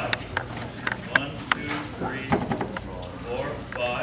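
Indistinct talk among people at a meeting, with scattered sharp clicks and knocks.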